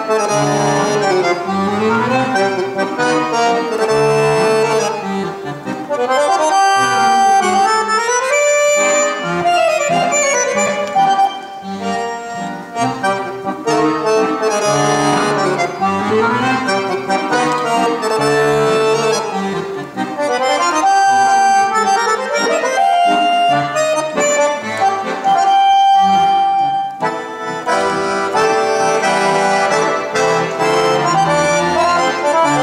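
A piano accordion played solo. It runs through fast melodies that climb and fall over chords in the bass, with a few high notes held longer, around a third of the way in and again near the end.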